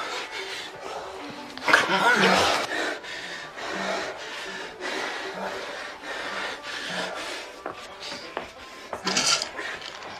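Film sound mix of scraping and rubbing, loudest about two seconds in and again shortly before the end, over short, sparse low musical notes.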